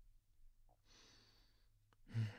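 Near silence, with one faint breath from a male voice actor about a second in, lasting under a second.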